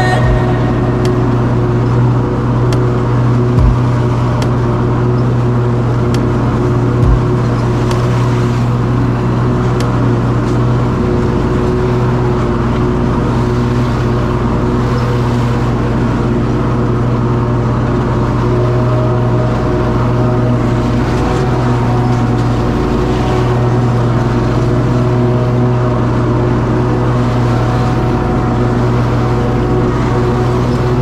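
Commercial stand-on lawn mower's engine running steadily at working speed while it cuts grass, a constant low hum with no change in pitch. Two brief low thumps come a few seconds apart in the first quarter.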